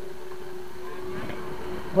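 A steady engine drone holding one pitch. A faint voice comes in around the middle.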